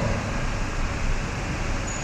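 A pause in speech, filled by the steady background hiss and low hum of the recording.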